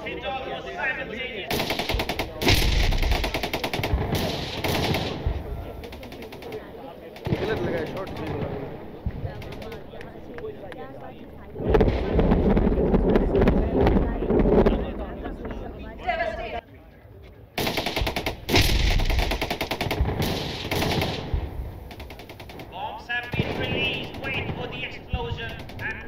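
Four long bursts of rapid automatic gunfire with a heavy rumble, separated by short lulls, during a military live-fire demonstration. A voice is heard near the end.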